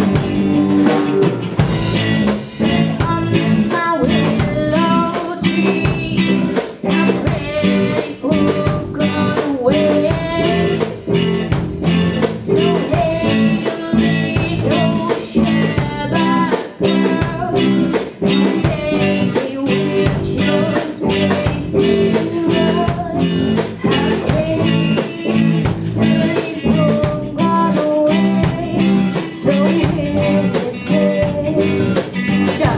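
A live band playing a song: a drum kit keeps a steady beat under electric guitar, with singing.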